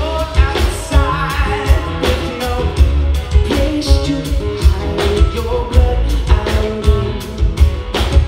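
Live rock band playing: a male voice singing over an acoustic-electric guitar, with a drum kit keeping a steady beat and heavy bass underneath.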